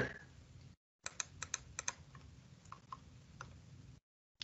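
Faint, quick clicking at a computer: about seven sharp clicks in under a second, starting about a second in, then a few scattered softer ones, as the on-screen page is zoomed in.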